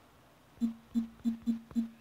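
Tablet on-screen keyboard key-press sounds as a word is typed: five short, low-pitched blips, about three a second, starting about half a second in.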